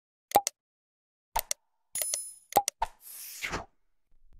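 Subscribe-button animation sound effects: a series of short pops and clicks, a bell-like ding about two seconds in, then a brief whoosh near the end.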